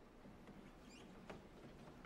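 Near silence, with a few faint light ticks and squeaks, such as stage creaks and soft steps.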